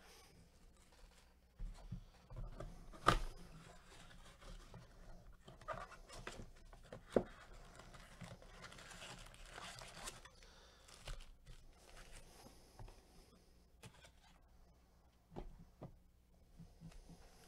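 Cardboard trading-card blaster box being torn open and its packs of cards slid out and handled: faint rustling and scraping, with a few sharp clicks and snaps, the loudest about three seconds and seven seconds in.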